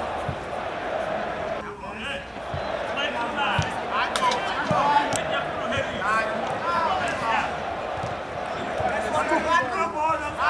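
Men shouting calls to each other during a small-sided football game on artificial turf, with a few dull thuds of the ball being kicked.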